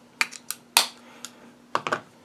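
A quick run of sharp, dry clicks and taps, about six in all, the loudest a little under a second in and a quick double click near the end, over a faint steady hum.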